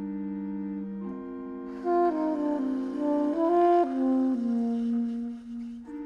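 Organ and saxophone duet. A held organ chord gives way about a second in to changing notes, and the saxophone comes in loudly about two seconds in with a short phrase of moving notes over the organ. A sustained organ chord returns near the end.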